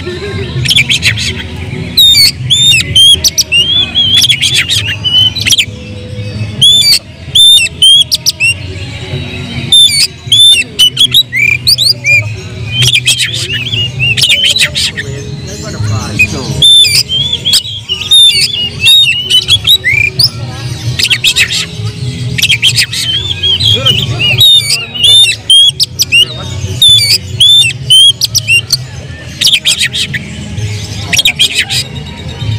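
Oriental magpie-robin (kacer) singing loudly and without pause in fighting mood: fast, varied whistles that sweep up and down, mixed with sharp chattering and harsh squawking notes.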